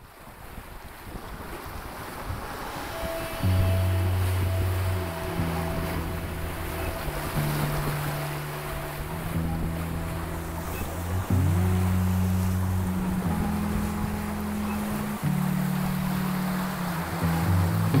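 Rough sea water rushing and splashing past a sailing catamaran's hulls, with wind on the microphone, fading in at the start. Background music with held bass notes comes in about three and a half seconds in and plays over it.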